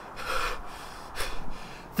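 A person breathing with effort: a breathy exhale, then a short, sharp inhale about a second later.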